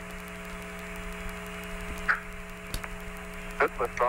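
Steady electrical hum with faint hiss, with a single click near the end of the third second and a brief voice near the end.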